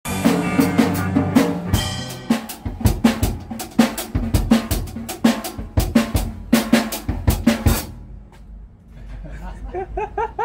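Drum kit played in a fast run of snare and bass-drum hits, which fades out about eight seconds in.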